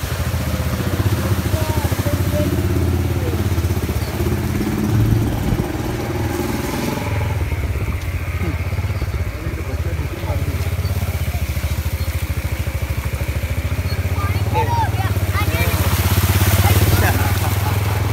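A motorcycle engine running steadily at low speed, with distant voices now and then.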